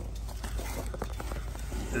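Faint, irregular light clicks and rustles over a low steady rumble: handling noise from a handheld camera moving close along the trailer's sheet metal.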